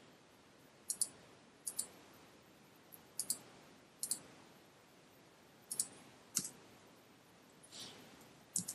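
Scattered single clicks at a computer, about seven short sharp ones at irregular gaps of a second or so, over quiet room tone, with a softer, longer sound near the end.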